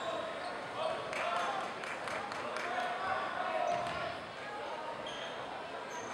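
Basketball bouncing on a hardwood court as it is dribbled, a run of short knocks, over the chatter of spectators in a large gym.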